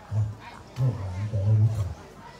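A man's deep voice in short, low-pitched phrases.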